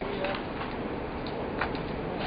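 Steady background noise of an outdoor truck yard at night, an even hiss with a few faint knocks.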